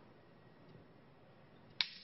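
Quiet room tone during a pause, then near the end a single short sharp click followed by a brief breathy noise.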